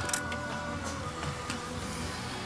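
A few light clicks and scrapes from a screwdriver tip picking white, caulk-like coolant deposits out of an engine's coolant passage, over background music.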